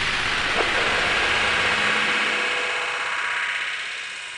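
Synthesized electronic sweep effect: a spacey, filtered noise wash with faint held tones underneath. Its low end drops away after about two seconds and the whole sound slowly fades toward the end.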